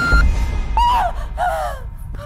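A woman's voice crying out: one rising cry, then short cries that fall in pitch, as she collapses. A low rumble runs under the first second.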